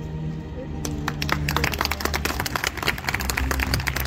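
A crowd breaks into applause about a second in, many hands clapping, over background music.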